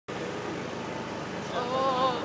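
Steady city background noise of road traffic, with a person's voice briefly calling out about a second and a half in.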